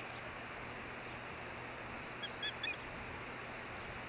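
Osprey giving a quick series of about four short, high-pitched chirps a little past two seconds in, over a steady background hiss.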